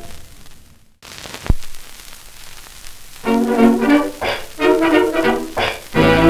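The last note of a 1920s dance-band 78 rpm record dies away, leaving about two seconds of shellac surface crackle and hiss with a single thump. Then the next record starts: a dance orchestra playing short, spaced chords about three seconds in.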